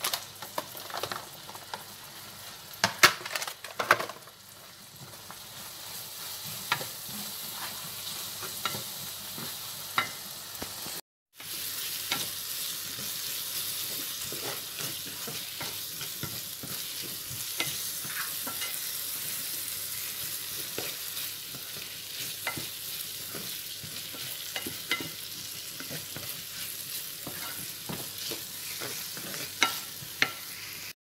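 Sliced onions sizzling as they fry in a nonstick frying pan, with a wooden spoon stirring and scraping them and ticking against the pan. A few loud knocks come in the first four seconds, and the sound drops out briefly about eleven seconds in.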